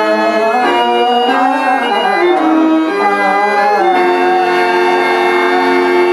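Harmonium accompaniment for a Telugu verse drama: sustained reed chords with a wavering, long-held melody line over them. The chord changes at about four seconds in.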